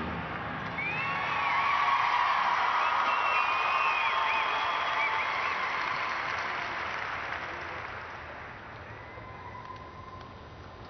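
Audience cheering and applauding with whistles and whoops, swelling about a second in and then fading away over the last few seconds.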